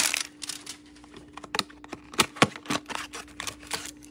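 Hands opening a cardboard trading-card hanger box and pulling the stack of cards out: a run of sharp, irregular clicks and snaps of card stock and cardboard, over a faint steady hum.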